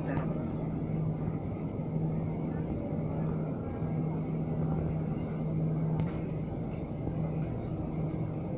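Steady rumble and low hum inside a moving Jakarta MRT train carriage, with a single light click about six seconds in.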